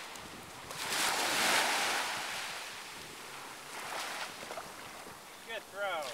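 Ocean surf breaking and washing up the shore, swelling to a loud surge about a second in and then easing. Near the end a child's high voice cries out briefly.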